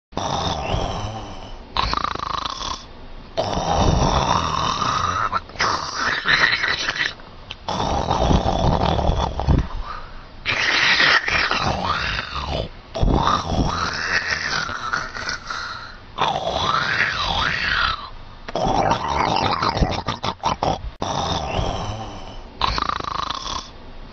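A person snoring loudly: one long snore after another, each lasting one to two seconds, with short breaks between them.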